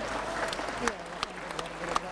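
Audience applauding, a dense spread of clapping through the pause in the speech.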